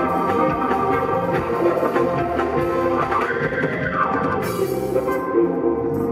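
Live funk band playing a groove, with electric guitar, drum kit, bass guitar and keyboards. A lead line bends up and back down in pitch about three seconds in.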